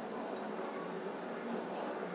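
Shallots and freshly added chopped tomatoes frying in hot oil in a nonstick kadai, giving a steady sizzle, with a few brief crackles at the start.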